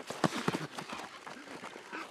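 Irregular patter of soft thumps and scuffs as goalkeepers move and dive on a grass pitch.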